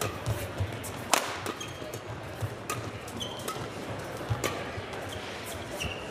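Badminton rackets striking a shuttlecock in a rally: four sharp cracks roughly a second and a half apart, with brief squeaks of shoes on the court mat over the hum of a large indoor arena.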